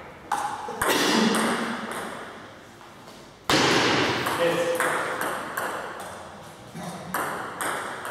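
Table tennis rally: a celluloid ball struck by rubber-faced bats and bouncing on the table, each hit sharp and ringing in a reverberant hall. The loudest crack comes about three and a half seconds in, and the later strokes come about every half second.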